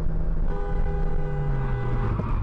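Car interior road and engine noise with a low hum that drops in pitch as the car slows, and a car horn sounding steadily from about half a second in, held to the end.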